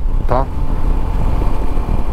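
Shineray SHI 175 motorcycle running as it is ridden, a steady low rumble with a faint steady hum above it.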